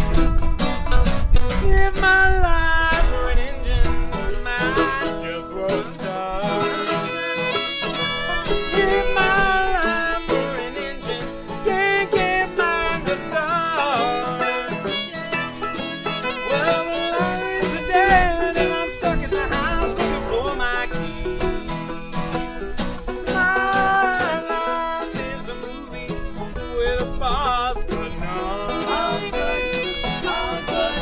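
Acoustic string band of fiddle, banjo, acoustic guitar, mandolin and ukulele playing a blues song together, with bending fiddle notes over the strummed and picked strings.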